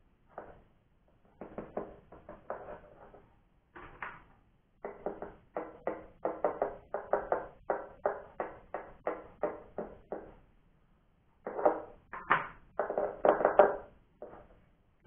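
A piezo under-saddle pickup tapped by fingertips, its signal played through a small amplifier as a run of quick amplified knocks with a short pitched ring. This is a test of the pickup after it was cut down to ukulele size. The knocks come in clusters of several a second, with two short pauses, and they are loudest near the end.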